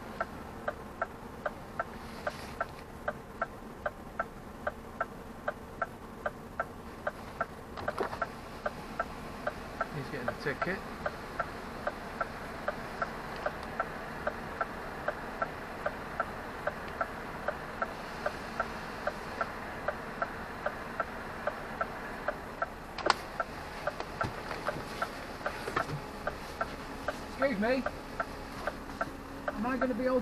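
A lorry cab's indicator flasher ticking steadily, about two to three clicks a second, over the hum of the idling diesel engine. One sharper click comes about three-quarters of the way through.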